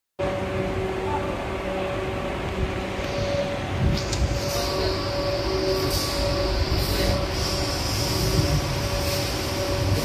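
Steady industrial machinery noise: a continuous low rumble with a constant hum. A high hiss joins about four and a half seconds in, and a few light clicks fall around the middle.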